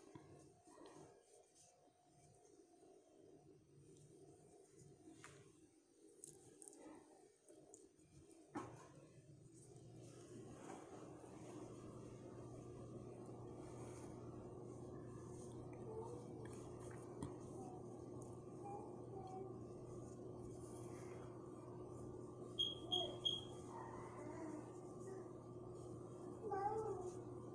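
Faint scattered clicks, then a low steady hum sets in about nine seconds in and holds. Three short high electronic beeps sound near the end.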